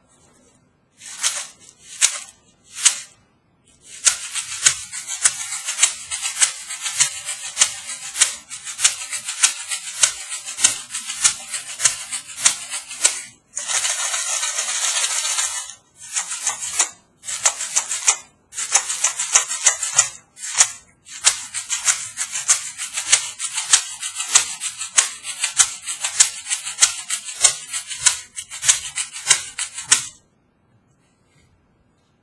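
Homemade shaker, a small Diet Pepsi can holding dried lentils with aluminium foil taped over the top, shaken: three single shakes, then a steady rhythmic rattle of lentils inside the can. About halfway through comes a few seconds of continuous rattling, and there are a few short pauses.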